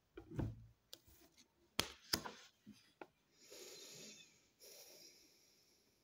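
Cards being handled on a wooden table: a soft thump, a few light taps and clicks, then two short spells of cards rustling and sliding.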